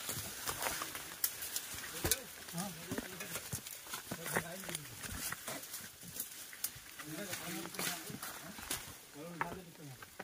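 Footsteps on dry leaf litter and loose stones, with twigs and branches crackling and rustling as people push through dense undergrowth. Faint voices are heard now and then.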